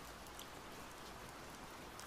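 Faint, steady rain ambience, an even hiss of rainfall with no other event standing out.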